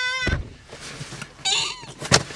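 A man's voice drawing out a high-pitched, sing-song 'have' at the start, then a short high, wavering vocal squeal about a second and a half in.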